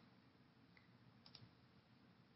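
Near silence, with two faint computer mouse clicks close together a little over a second in.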